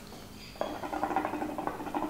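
Water bubbling and gurgling inside a watermelon hookah base as air is drawn through it, starting about half a second in as a rapid, even run of bubbles. The steady bubbling is the sign of a free, good draw through the fruit bowl.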